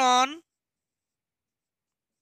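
A man's voice ends about half a second in, followed by near silence; no marker sound is audible.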